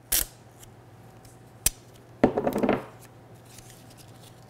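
Masking tape ripped off its roll in a short burst, a single sharp click about a second and a half later, then a rasping tear of about half a second as a strip is torn off.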